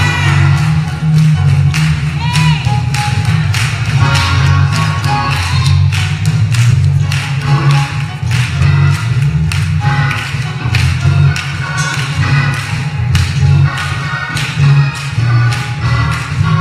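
Church band playing live music: a drum kit keeps a steady beat over a continuous bass guitar line, with keyboard chords above.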